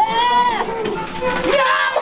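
High-pitched, drawn-out human cries, animal-like and wavering, each arching up and down in pitch: a long one at the start and another rising near the end.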